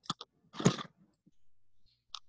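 Mouth noises from a speaker pausing mid-answer on a video call: a few short lip and tongue clicks, then a brief louder breathy sound about half a second in.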